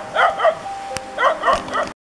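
A dog barking in short, high yaps, two close together near the start and three more in the second half. The sound cuts off abruptly just before the end.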